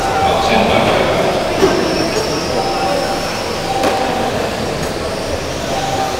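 Several 1/12-scale GT12 electric RC pan cars racing on a carpet track. Their motors whine, rising and falling as the cars pass, over steady tyre and drivetrain noise.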